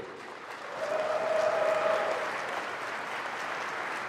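A large audience in a hall applauding, swelling about half a second in and slowly tapering off. A single held tone sounds over the clapping for about a second near the start.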